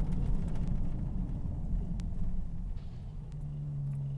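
Car interior noise while driving: a steady low rumble of engine and road, with a single faint click about halfway through and a steady low hum coming in near the end.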